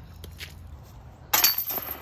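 Metal chains of a disc golf basket clinking with a sudden loud jangle about a second and a half in, followed by a brief high ringing.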